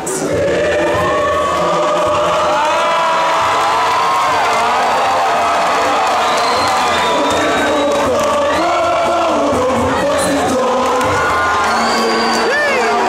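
Large mixed choir singing held chords in a hall, with audience whoops and cheers rising over the singing, heard through a poor-quality recording.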